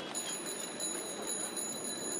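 Bicycle bell ringing in a rapid, continuous trill, its bright metallic ring held steady.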